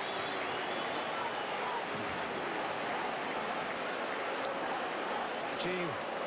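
Large stadium crowd making a steady noise of cheering and chatter after a goal, with faint voices mixed in.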